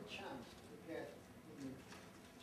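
Faint, indistinct conversation between men's voices.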